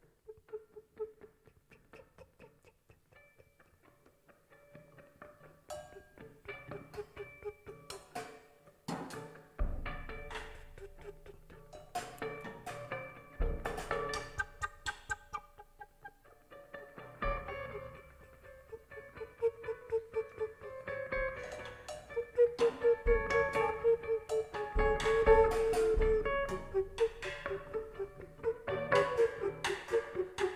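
Live art-rock band playing with recorders, guitar, EWI bass and drums. It opens quietly with a low held line and sparse plucked notes, then clicking percussion and kick-drum hits come in about ten seconds in and the music builds louder.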